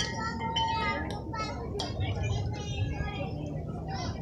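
Background chatter of several voices talking and calling at once, none of them close, over a steady low rumble.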